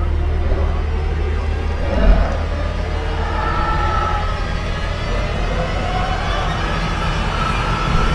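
Horror-trailer sound design: a steady deep rumbling drone, with one heavy low hit about two seconds in and faint wavering eerie tones above it in the second half.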